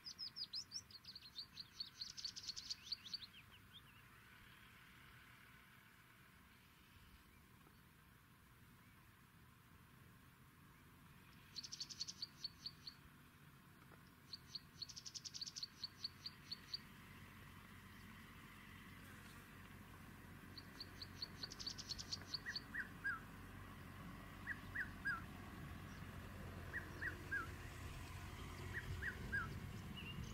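Wild birds calling in the savanna: several bursts of quick, high, evenly repeated notes, each lasting one to three seconds. From about two-thirds of the way in, short lower down-slurred notes come in small groups, over a low background noise that grows toward the end.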